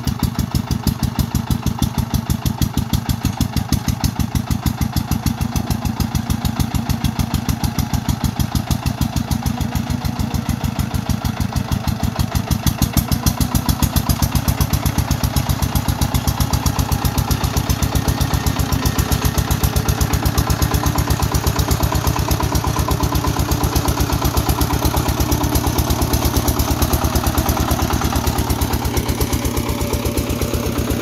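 Single-cylinder diesel engine of a công nông two-wheel tractor chugging steadily under heavy load as it winches itself and its loaded cart up a steep rocky slope, a little louder about halfway through.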